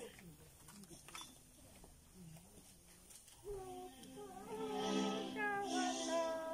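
Faint murmur of voices, then singing starts about halfway in with long held notes, growing louder toward the end.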